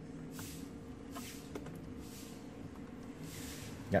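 Quiet background: a faint steady low hum with a few soft rustles and small clicks.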